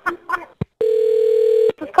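A few short bursts of laughter, a click, then a steady single-pitched telephone line tone held for just under a second before it cuts off, as the next call is placed.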